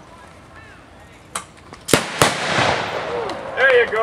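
Two sharp reports about a third of a second apart, about two seconds in: a fast-draw single-action revolver shot at balloons, with a noisy spell ringing on after them.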